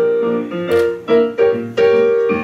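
Yamaha digital stage piano playing jazz chords, struck one after another so that each rings into the next, four fresh strikes in about a second and a half.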